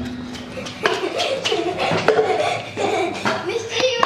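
People talking and laughing in a reverberant hall, with a laugh near the end.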